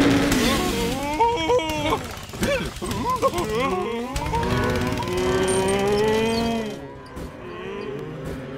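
Cartoon tractors mooing like cattle in a string of rising and falling calls, with one long call in the second half, over background film music.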